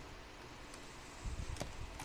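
Quiet handling noise of things being moved about on a desk, with a couple of light clicks, the clearer one about a second and a half in.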